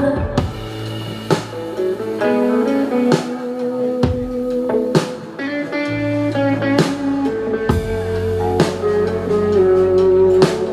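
Live band playing an instrumental break: an electric guitar carries the melody over drum kit hits at a slow beat, about one a second, and bass, which drops out for a few seconds in the middle.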